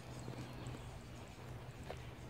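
Faint footsteps on a park path: a few soft steps, one a little sharper near the end, over quiet outdoor background.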